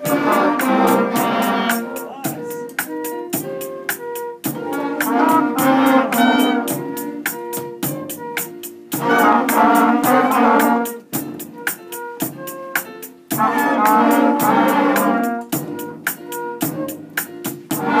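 Student concert band of brass and woodwind instruments (trumpets, trombones, saxophones, clarinets) playing loud phrases about every four and a half seconds. A quick, even clicking beat runs through the phrases and the gaps between them.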